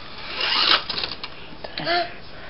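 Toy slot car running on a plastic race track: a short burst of whirring and rattling about half a second in, then a few light clicks.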